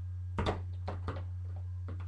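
A few short knocks over a steady low electrical hum: the loudest come about half a second in, with weaker ones shortly after a second and near the end.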